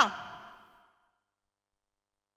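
The last sound of a woman's voice through a microphone and PA, fading away in room echo over about the first second, then silence.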